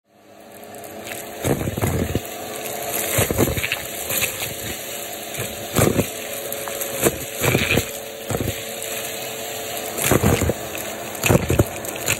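Vacuum cleaner running through a rectangular cardboard tube used as its hose, fading in over the first second to a steady hum. Over the hum come repeated rattling, whooshing bursts as plastic beads, balloon scraps and fluff are sucked up off the carpet.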